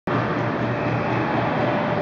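Motorized stroller's electric wheel drive running as it rolls across a hardwood floor: a steady whirring noise with a low hum underneath, cutting in abruptly at the start.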